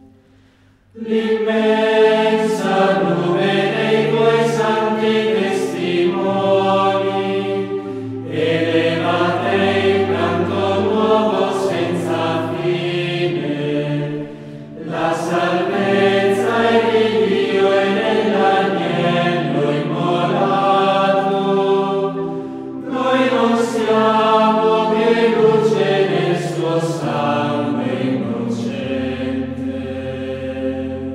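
Choir singing a slow chant: several voices holding long, steady notes in long phrases, with short breaks between phrases.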